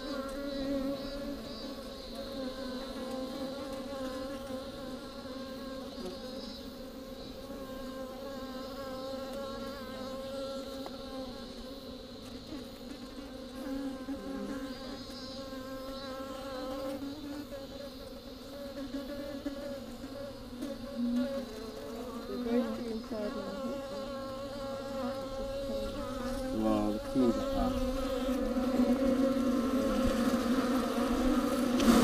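Many bees buzzing steadily inside a hollow tree trunk, a continuous layered hum. It grows louder over the last few seconds as a handful of bees is pushed in through the opening.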